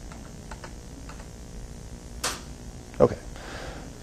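A few faint clicks and one sharper click a little past the middle, against low room hum in a quiet room; a man says "okay" near the end.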